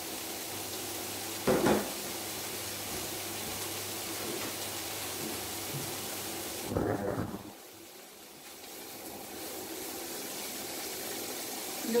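Chopped bacon sizzling in a frying pan in its own fat, with no oil added: a steady hiss. Two brief clatters come about one and a half seconds in and just before the seven-second mark. After the second one the sizzle drops away for a couple of seconds, then comes back.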